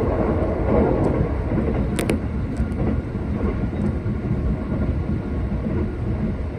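Running noise of a JR East E257 series 2000 limited-express train heard from inside the passenger car: a steady low rumble of wheels on rail, with a pair of sharp clicks about two seconds in.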